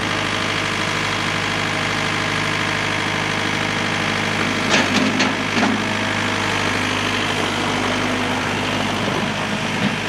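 2006 John Deere 4320 tractor's four-cylinder turbocharged diesel engine running steadily while the tractor drives and works its front loader. A few short knocks sound about five seconds in.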